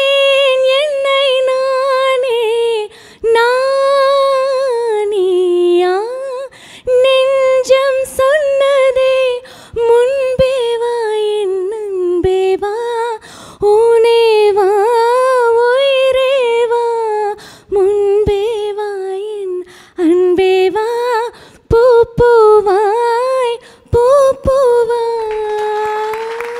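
A woman singing a Tamil film song live and unaccompanied into a handheld microphone, in phrases of long, wavering held notes broken by short breaths.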